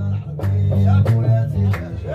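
A guembri, the Gnawa three-stringed bass lute, plucked in a deep repeating bass line, with sharp handclaps over it about twice a second.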